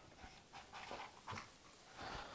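Faint, short, irregular breaths of a winded man panting after a long run.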